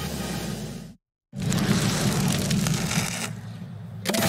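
A rough, dense noise from a television soundtrack, broken by a short dropout to dead silence about a second in, then resuming loudly and easing off near the end.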